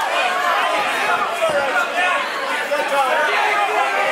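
Crowd of spectators at a cage fight talking and shouting, many voices overlapping continuously.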